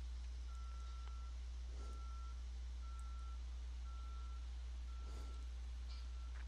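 A faint electronic beep, one steady tone repeating about once a second, over a steady low hum.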